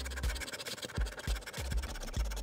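A scratcher coin scraping the silver coating off a paper scratch-off lottery ticket in quick, repeated strokes.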